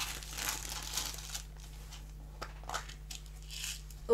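Clear plastic packaging crinkling as hands peel it off a small round plastic container of paper flower embellishments, with a few light clicks.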